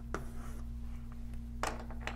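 Chalk on a blackboard: a sharp tap of the chalk meeting the board just after the start, a short scratchy stroke, and another louder tap near the end, over a steady low hum.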